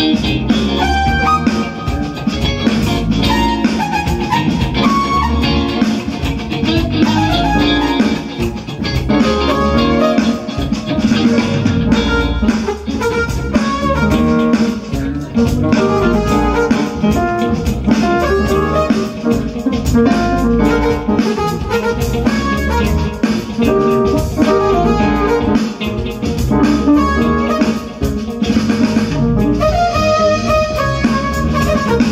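Live band playing together through amplifiers: electric guitar, electric bass, a Roland electronic drum kit and keyboards, a full ensemble groove with a steady beat.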